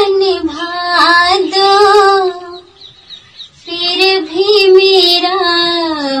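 A woman singing a slow song in long, held, gently wavering notes, with a pause of about a second midway.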